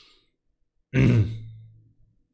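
A man's short closed-mouth "hmm" about a second in, with a breathy start, falling slightly in pitch and trailing off.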